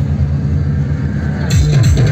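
Loud electronic DJ dance music with a heavy, pulsing bass line. About one and a half seconds in, the full beat and higher parts come in over the bass.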